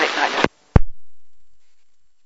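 Air traffic control radio transmission heard through an Icom IC-R3 scanner receiver: the voice cuts off about half a second in, followed by a brief hiss and a single sharp click that then dies away.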